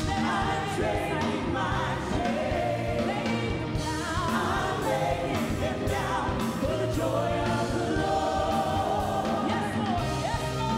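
Live gospel worship song: a group of singers on microphones singing together over keyboards and a steady bass line.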